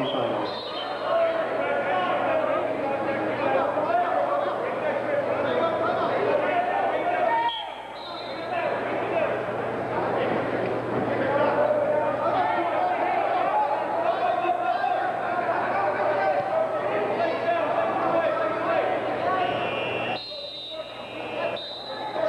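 Spectators and coaches shouting and talking at once in a gymnasium, a loud steady babble of many voices that dips briefly about eight seconds in and again near the end.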